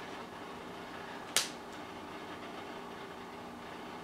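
Faint steady hum of an aquarium filter running in the room, with one sharp click about a second and a half in.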